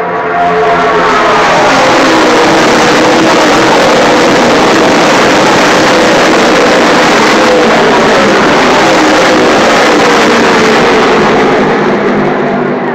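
A pack of NASCAR Nationwide Series V8 stock cars running past at speed, making a loud, continuous engine din. Several engine notes overlap and slide down in pitch as the cars go by.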